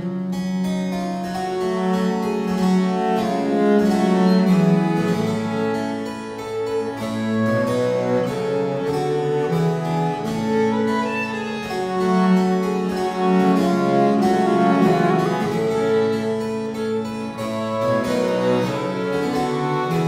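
A Renaissance pavane played by a small early-music ensemble: harpsichord, wooden baroque transverse flute (traverso) and viola da gamba. The harpsichord's plucked notes come in right at the start, over the sustained flute and viol lines.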